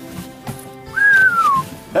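A person whistles once about a second in, a single pure note lasting under a second that slides downward, a whistle of admiration.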